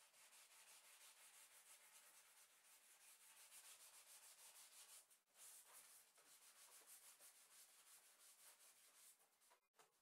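Sandpaper rubbed by hand over painted wood, distressing the paint: a faint scratchy hiss in quick back-and-forth strokes, with a short break about five seconds in, stopping just before the end.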